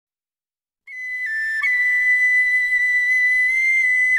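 Solo high woodwind opening a folk-rock song: after almost a second of silence it plays two quick note changes, then holds one long high note.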